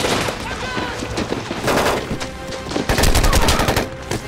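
Film battle soundtrack of rapid automatic gunfire and rifle shots, many weapons firing at once. The loudest and deepest stretch of firing comes about three seconds in.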